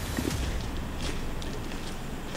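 Footsteps with a few faint scuffs and clicks over a steady low rumble.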